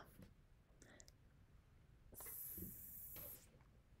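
Near silence: room tone, with a faint soft hiss lasting about a second, starting about two seconds in.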